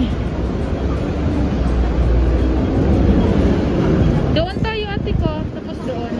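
Street traffic: a vehicle engine rumbling past, swelling to its loudest about two to three seconds in and then fading.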